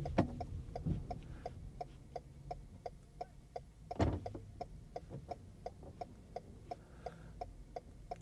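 Car turn-signal indicator clicking steadily, about three ticks a second, over the low hum of the car cabin, with a single thump about four seconds in.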